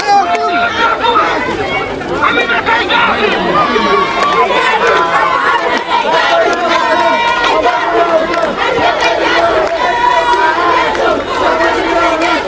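Large crowd of students and adults talking and calling out all at once, many voices overlapping into a loud, continuous din.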